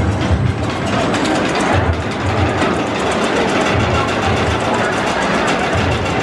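S&S Free Spin roller coaster cars rumbling and clattering along the steel track, with music playing underneath.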